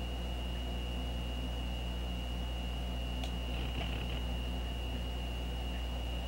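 Steady low electrical hum with a thin, constant high whine: the background noise of a computer screen recording. One faint click about three seconds in.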